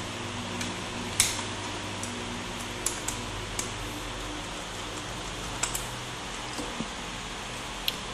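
A few faint, sharp clicks and taps of a small screwdriver on the screw and plastic base of a netbook as the screw is undone, over a steady low mechanical hum in the room.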